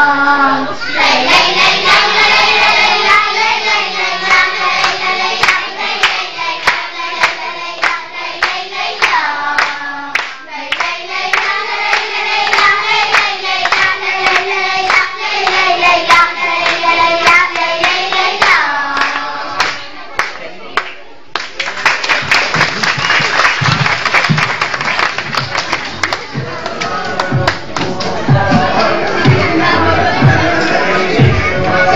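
Girls' children's choir singing in unison, with hand claps keeping the beat. About 21 seconds in the song ends and the audience breaks into applause.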